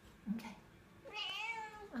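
A tabby house cat gives one meow about a second in, rising and then falling in pitch, pestering to be let outside.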